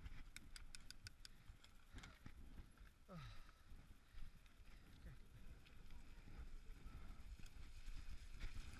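Mountain bike setting off down a dirt trail: a quick run of sharp clicks from the bike near the start, then a low, uneven rumble of the tyres rolling over dirt.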